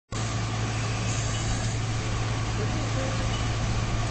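A steady machine drone, a loud low hum under an even hiss, with no change in pitch or rhythm.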